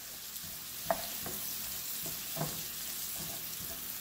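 Green beans sizzling in a hot skillet as they are tossed with wooden tongs, a steady hiss with a few short clicks of the tongs against the pan.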